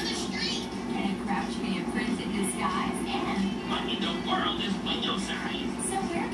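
Indistinct background television sound: muffled voices over a steady low hum.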